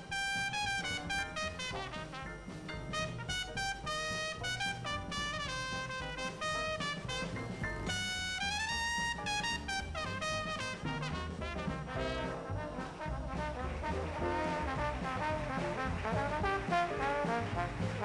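New Orleans-style jazz band playing, led by a trumpet solo with quick runs over string bass, piano and drums. The sound grows fuller in the last few seconds as the trombone comes to the fore.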